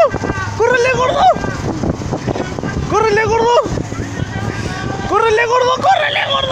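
Voices shouting three drawn-out, high-pitched yells about every two seconds, each swooping up at the start and dropping off at the end, over a steady outdoor rumble with wind on the microphone.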